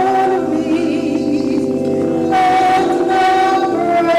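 A small group of voices singing a slow gospel song in long held notes, the top voice wavering in vibrato over sustained lower harmony.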